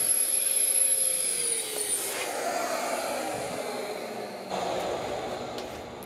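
Shaper Origin handheld CNC router's spindle winding down after finishing a cut: its high whine and lower tone drop in pitch and fade out over the first two seconds. A steady rushing noise, like a dust extractor, continues under it.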